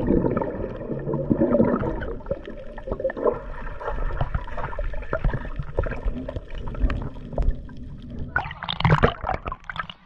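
Underwater sound picked up by a submerged action camera: muffled gurgling and bubbling water with many small clicks as the swimmer moves. Near the end there is a brief, brighter splash as the camera breaks back through the surface.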